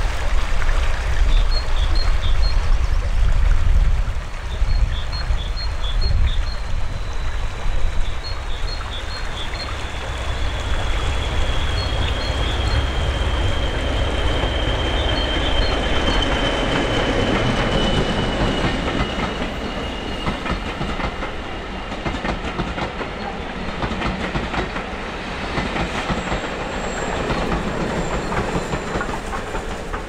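A diesel locomotive hauling carriages passing along a heritage railway line: engine running and wheels rolling on the rails, with clickety-clack. Through the middle a long high wheel squeal slowly falls in pitch.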